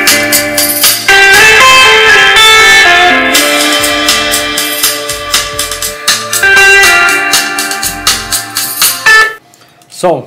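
Guitar music played through a Kicker CS Series CSC65 6.5-inch coaxial car speaker during a sound test. The music cuts off suddenly about nine seconds in.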